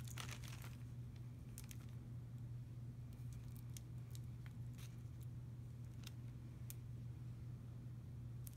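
Faint handling noises as a gold rhinestone ring bracelet is put on: scattered small crinkles and light clicks, over a steady low hum.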